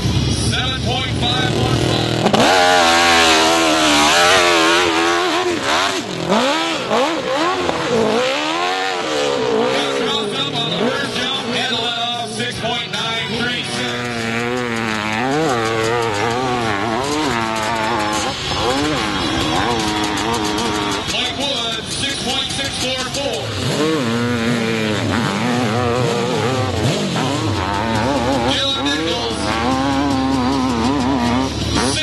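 Dirt-bike engines revving hard on a steep hill climb, the pitch sweeping up and down over and over as the riders work the throttle, one bike after another.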